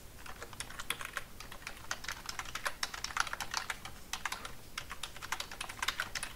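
Typing on a computer keyboard: a run of quick, irregular keystrokes as a web address is typed in.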